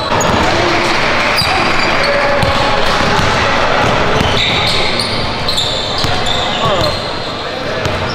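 Pickup basketball game on a hardwood gym floor: a ball dribbled in repeated thumps, sneakers giving short high squeaks, and players' indistinct voices calling out across the hall.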